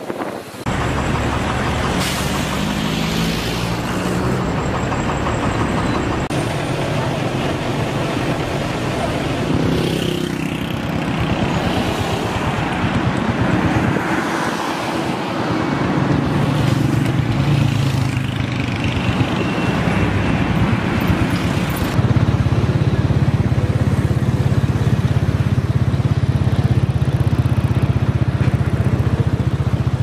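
Engines of heavy tank-transporter trucks in a military convoy running on a road. A pitch falls about ten seconds in, and from about twenty-two seconds on a steadier, louder low engine drone takes over.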